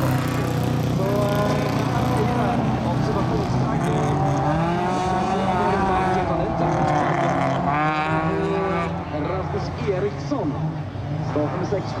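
Folkrace cars racing, their engines revving up and falling back as they go through the gears and corners. The revs rise and drop most clearly a little past the middle.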